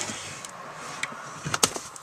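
Wooden drawer being handled and pulled open: a few light knocks and clacks, the loudest cluster about one and a half seconds in.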